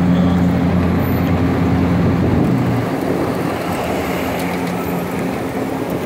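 Vehicle engine running at low revs in street traffic: a steady low hum that weakens after about three seconds, over continuous traffic noise.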